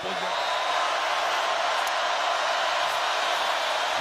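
Steady stadium crowd noise from a large football crowd, an even wash of voices at a constant level.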